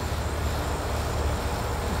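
Steady outdoor low rumble with a faint hiss, even throughout, with no distinct events.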